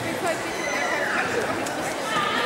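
One high-pitched shouted call, held and then falling in pitch from about half a second to a second and a half in, over the steady murmur of a crowded sports hall.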